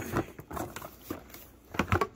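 Cardboard box flaps being pushed open and hard plastic handle pieces rustling and knocking as they are lifted out of the box. There is a sharper knock near the end.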